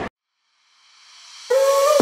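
A sudden cut to silence, then a rising hiss swell that leads into electronic background music. The music enters abruptly about one and a half seconds in on a long held note.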